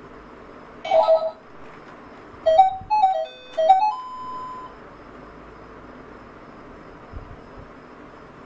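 Children's toy learning laptop sounding short electronic beeps from its small speaker as its keys are pressed. One beep comes about a second in, then a quick run of beeps stepping up and down in pitch at about two and a half seconds, ending on a held tone. A faint steady hiss sits underneath.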